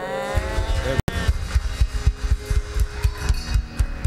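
Church band playing softly under the service: repeated low bass thumps beneath steady held keyboard notes, after a drawn-out pitched sound in the first second.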